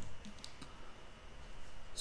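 A few faint clicks over quiet room tone.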